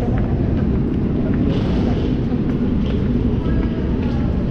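Steady low rumble of an underground metro station, with a few faint high tones near the end.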